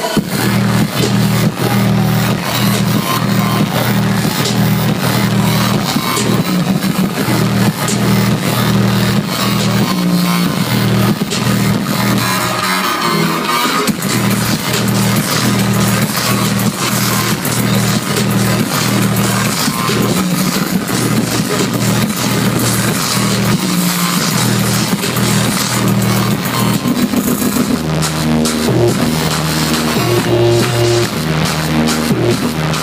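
Loud electronic dance music from a DJ set on a club sound system, with a heavy, steady bass beat.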